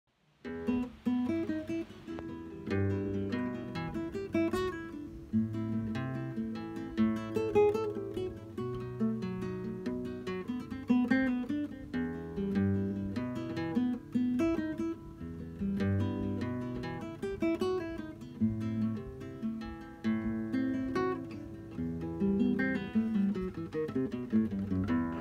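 Solo nylon-string flamenco guitar: a flowing passage of fingerpicked notes and chords, starting about half a second in.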